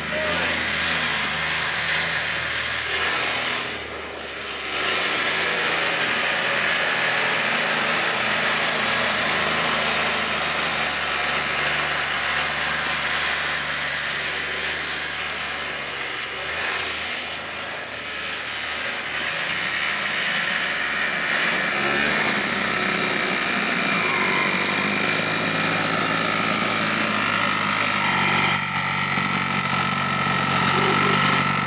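Small engine of a 1970 Arctic Cat Kitty Cat children's snowmobile running steadily as it is ridden. Its sound dips briefly twice and is a little louder near the end.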